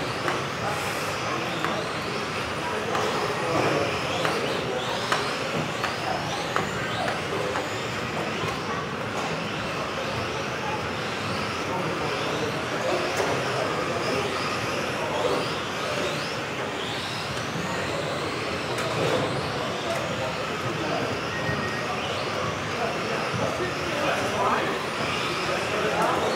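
Several radio-controlled model cars racing around an indoor track, their motors whining up and down in pitch as they accelerate and brake, over tyre and hall noise.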